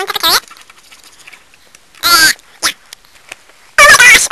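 A high-pitched human voice making short, wordless vocal noises in bursts: one at the start, one about two seconds in, and a quick run of them near the end.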